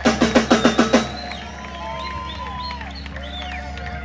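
Live band drummer playing a quick drum-kit fill of about eight hits over the first second. Then quieter sustained tones that slide in pitch ring out over a steady low hum.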